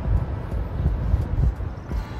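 Wind buffeting the phone's microphone outdoors: a low, irregular rumble that rises and falls in gusts.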